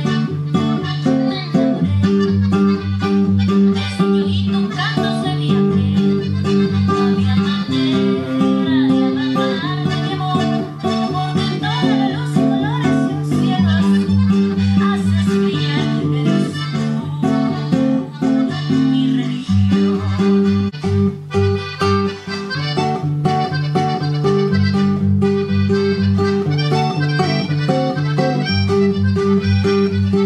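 Nylon-string classical guitar played with the fingers, running through a chord progression in a steady repeating rhythm over a pulsing bass line.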